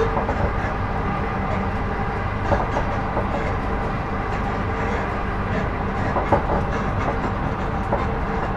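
Class 458/5 electric multiple unit running at speed, heard inside its motor coach: a steady rumble of wheels on rail with a faint steady tone over it. A couple of sharper knocks stand out, the loudest about six seconds in.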